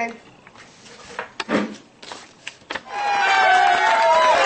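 A few light knocks and rustles of a hand picking a card from a plastic bucket, with a short vocal sound about halfway through. About three seconds in, music with a melody starts loudly.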